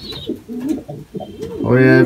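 Domestic pigeon cooing in low notes that rise and fall, with a man starting to speak near the end.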